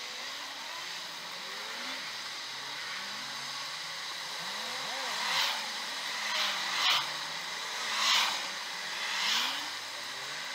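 Road traffic passing close to a stationary car, heard from inside it: a steady hum of engines and tyres, then cars going by one after another in the second half, each swelling and fading as it passes.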